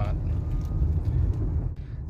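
Steady low rumble of engine and road noise inside the cabin of a moving Hyundai Stargazer MPV, picked up by a phone's built-in microphone.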